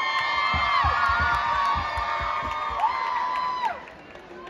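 A gym crowd cheering and screaming, with many long, overlapping, high held "woo" cries and some low thumps in the middle. The cheering dies down shortly before the end.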